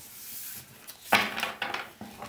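A deck of tarot cards being shuffled by hand, the cards sliding and rubbing against one another, with a cluster of short clicks in the second half.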